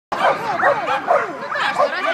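A dog barking and yipping excitedly in quick, overlapping calls, mixed with people's voices.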